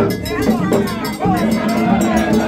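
Live Gagá percussion: a metal bell-like instrument struck in a fast, steady beat over drums, with crowd voices over it.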